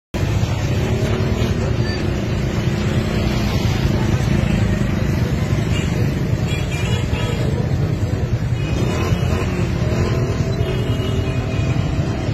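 Street traffic: motorcycle and car engines running in a steady low rumble, with crowd voices mixed in.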